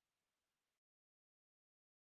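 Near silence: a pause in speech, with the recording going completely dead less than a second in.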